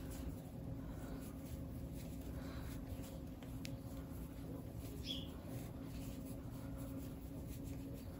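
Quiet room tone with a steady low hum and faint soft scratching of a crochet hook pulling cotton twine through stitches, with a faint short high chirp about five seconds in.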